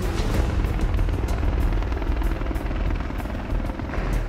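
AH-1Z Viper attack helicopter in flight, its rotor blades beating in a fast, steady chop, with music underneath.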